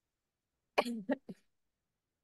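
A woman coughing: a sharp cough about three-quarters of a second in, followed by two short ones.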